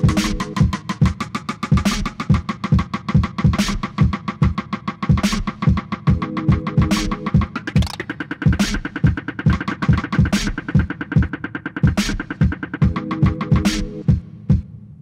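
Electronic instrumental beat played live on a drum pad sampler and keyboard. A fast, even run of ticking hi-hats sits over a steady kick drum. Short synth chords come and go, and a held higher synth note sounds through the middle of the stretch.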